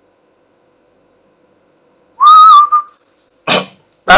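A short, loud, high whistle-like tone about two seconds in, lasting under a second and dipping slightly in pitch, after a faint steady hum. A brief voice-like sound follows near the end.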